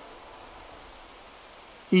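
Faint steady background noise, even and without any distinct sound in it, in a pause between spoken words.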